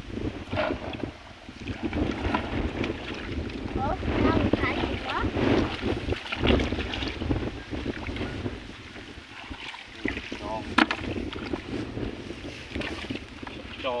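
Water sloshing and splashing as people wade and move through shallow, muddy paddy water among rice plants, with wind rumbling on the microphone.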